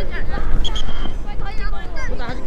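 Several voices calling and shouting across a youth soccer field at once, with wind rumbling on the microphone.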